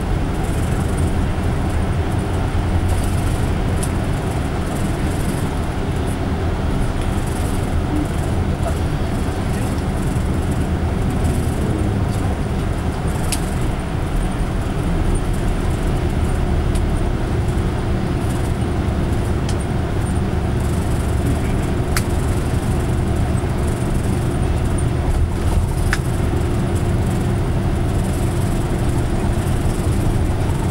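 Highway bus cabin while driving: a steady engine drone and road noise, with a faint steady whine joining about halfway and a few light clicks.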